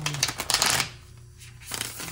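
A tarot deck being riffle-shuffled by hand: a rapid fluttering run of cards for most of the first second, then a shorter riffle near the end.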